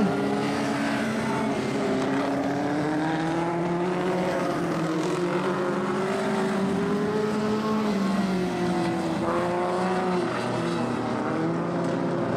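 Vintage speedway sprint car engines running on a dirt oval. The drone is steady, and its pitch rises and falls gently as the cars circle.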